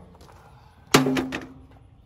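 A single metal clank about a second in, ringing briefly, followed by a few lighter clicks: strap or trailer hardware striking the steel utility trailer that carries a riding mower.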